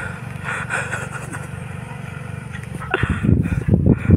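Tractor engine running with a steady low rumble. In the last second, loud, uneven low thumps take over.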